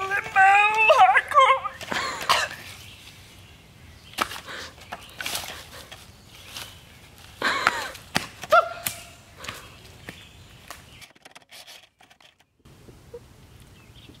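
A woman's wordless vocal sounds with wavering pitch, mixed with scuffs and light knocks of her body against the wooden rails and the leafy ground as she limbos under and climbs through a trail fence. The sound cuts out briefly near the end.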